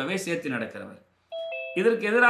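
A brief electronic two-note chime, a higher note followed by a lower one like a ding-dong doorbell, sounding in a pause between spoken words about one and a half seconds in.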